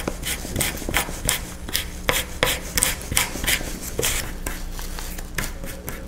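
A comb raked again and again through cotton macramé cord, fraying the cut ends into fluff: short scratchy strokes, about three a second.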